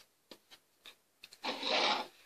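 A few faint clicks from a plastic pom-pom maker being handled, then about half a second of rustling hiss near the end as yarn is drawn around the wound pom-pom.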